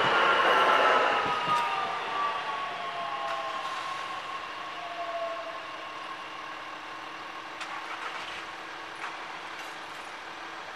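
Regional electric multiple unit running through a level crossing and moving away. Its drive whines in several tones that slowly fall in pitch, loudest in the first second, then fade under a faint steady hum.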